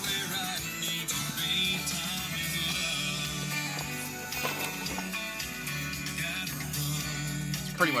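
Radio music playing through a newly installed Pioneer touchscreen car stereo, heard inside the car at a steady level.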